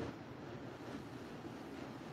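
Faint, steady background hiss of room tone, with no distinct sounds.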